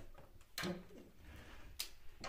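Quiet handling with one sharp click near the end, as the heater's mains plug is pushed into a wall socket.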